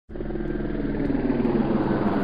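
A small quadcopter drone's motors and propellers running steadily, rising a little in pitch about one and a half seconds in.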